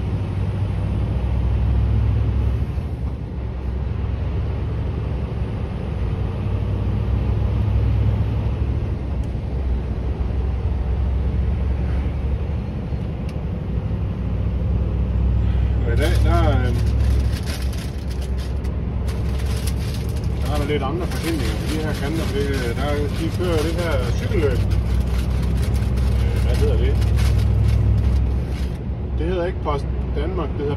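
Scania V8 truck engine running steadily at road speed, heard from inside the cab as a deep drone with road noise. The drone eases off briefly three times.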